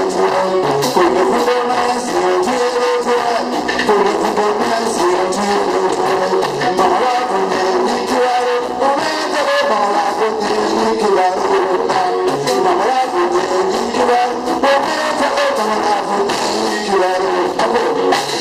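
Live band music: an electric guitar and a drum kit playing a steady groove, with little bass.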